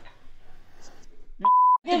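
A short beep at one steady pitch, lasting about a third of a second, near the end, cut in sharply like an edited-in censor bleep; before it there is only faint room noise.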